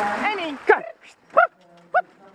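Short, sharp vocal calls from someone on the carriage urging the driving horse on, three in quick succession about two-thirds of a second apart, after a brief rushing noise at the start.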